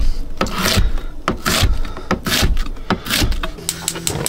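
Kamikoto Japanese-steel chef's knife chopping peppers on a plastic chopping board, heard as an irregular series of knocks. Near the end comes a quick run of sharp clicks as the gas hob's burner is lit, and a low steady hum sets in.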